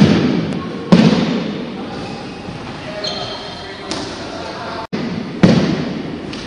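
Heavy thuds of jumping stilts landing on a gym floor, three in all: one at the start, one about a second in and one near the end, each echoing in a large hall. Voices carry on underneath.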